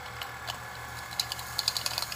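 Tabletop cotton candy machine's spinner motor whirring steadily, with light irregular ticks of plain granulated sugar flung from the spinning head against the plastic bowl; the ticks grow more frequent about a second in.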